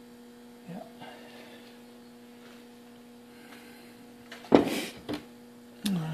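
A steady low hum, broken about four and a half seconds in by a loud, short clatter and a second smaller knock, then a sharp click near the end: a freshly shaken-out aluminum sand casting being knocked and handled over a bucket of foundry sand.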